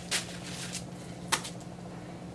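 Synthetic wig fibres rustling as they are handled, with two short rustles, one just after the start and one past the one-second mark, over a steady low hum.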